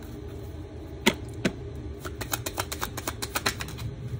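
Tarot cards being shuffled by hand: two separate crisp snaps of cards about a second in, then a quick run of light clicks lasting a little over a second.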